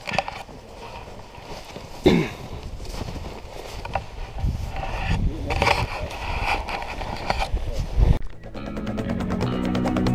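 Footsteps crunching through deep snow, with wind rumbling on the microphone and a few short knocks. About eight seconds in this cuts abruptly to background music with a steady beat.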